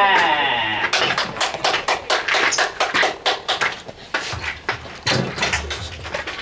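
A player's long shouted cheer, wavering in pitch, cut off about a second in, followed by a quick irregular run of sharp clicks.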